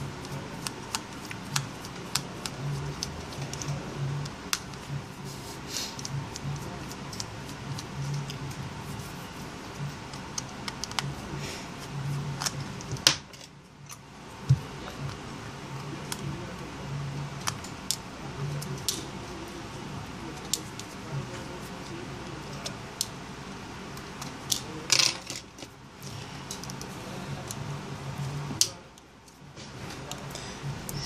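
Small, irregular metallic clicks and taps of a thin screwdriver working the tiny screws of a smartphone's inner back panel, over a steady low background hum.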